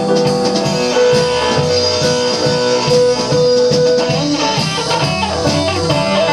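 Live blues band playing an instrumental passage with no vocals: electric guitar over bass, drums and keyboards, with a steady drum beat and long held notes.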